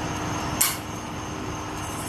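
Pliers gripping and twisting a brake caliper piston, with one brief scrape about half a second in, over a steady background hum.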